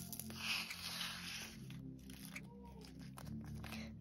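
Quiet background music, with a faint rustle in the first second and a half as rhinestones are tipped from a plastic bag into a plastic tray and settle.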